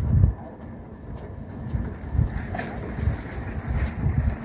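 Wind buffeting the microphone outdoors, an uneven low rumble that gusts up and down, strongest at the very start.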